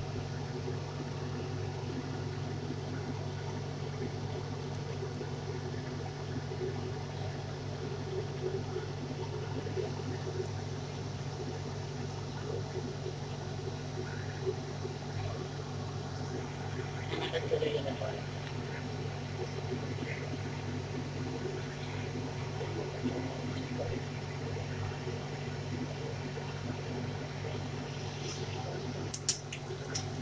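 A steady low hum with a faint hiss while mustard oil heats in an aluminium kadai on the stove. Near the end, a quick burst of sharp crackles as onion seeds (nigella) go into the hot oil.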